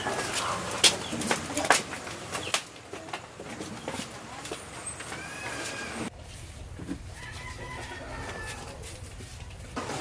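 Chickens clucking and a rooster crowing in the background, with arching calls about five seconds in and a longer held call a little later. A few sharp knocks come in the first two seconds.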